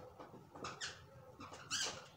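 Dry-erase marker squeaking on a whiteboard as lines are drawn, in short high squeaks: a few about half a second in and another near the end.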